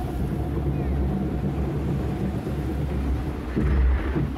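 Steady low rumble and rushing noise of a raft water-slide ride at the top of its drop, with wind buffeting the microphone, growing a little louder near the end.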